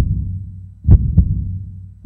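Slow heartbeat sound effect: low double thumps, lub-dub, repeating a little over a second apart over a steady low hum.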